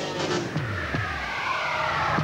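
Chevrolet S10 compact pickup's V6 engine revving as the truck drives fast past, its pitch falling, then a high tyre squeal that rises and falls in the second half, over commercial music.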